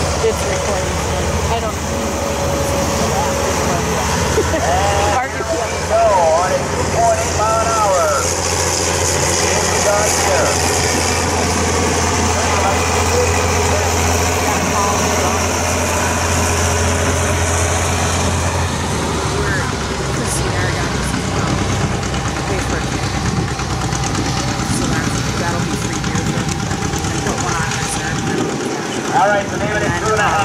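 Antique tractor engine working steadily under load at low speed, pulling a weight truck in a tractor pull, with a deep, even engine drone that stops about two-thirds of the way through. Voices are heard over it at times.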